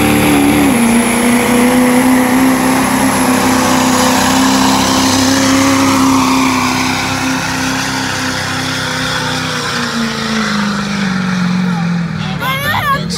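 GMC diesel pickup pulling a sled, its engine held at high revs under full load with a high whistle above it. The engine note stays steady for most of the pull, then drops in pitch near the end as the truck slows under the sled.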